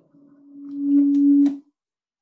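A single held mid-pitched musical note, very pure and steady, swelling louder over about a second and then stopping about a second and a half in.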